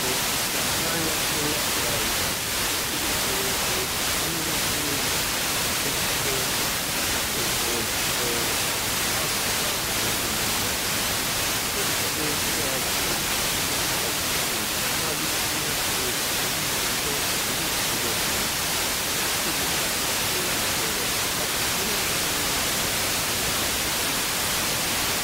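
FM radio receiver tuned to a weak long-distance signal from TRT1 Izmir, arriving by troposcatter: steady static hiss with faint Turkish speech coming and going through the noise.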